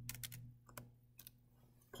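Faint computer keyboard keystrokes: a quick run of a few key presses, then two or three single taps.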